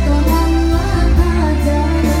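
A song performed live: a voice singing over electronic keyboard backing, with a strong bass line and a steady beat.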